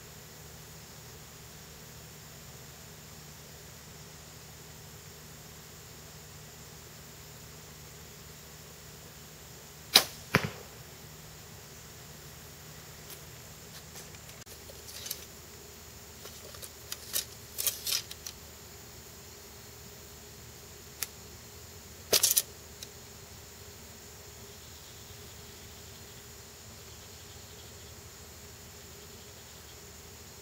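A compound bow being shot: a loud, sharp snap about ten seconds in with a second knock under half a second after it. Then a run of lighter clicks and knocks and a short clattering burst a little past the twenty-second mark, from the bow and arrows being handled.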